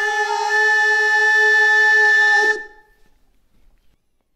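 A solo singing voice holding the song's final long note, steady in pitch, for about two and a half seconds before stopping.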